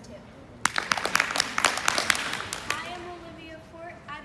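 A small group clapping in a hall for about two seconds, starting just over half a second in, with sharp separate claps. A girl's voice starts speaking near the end.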